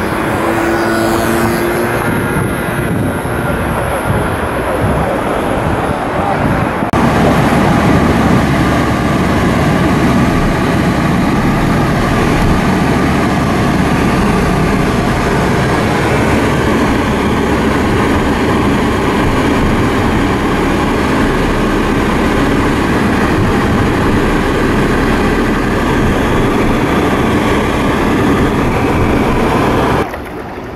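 Engine and wind noise on a moving boat for the first few seconds. After an abrupt change, a car's engine and road noise heard inside the cabin, running steadily at driving speed.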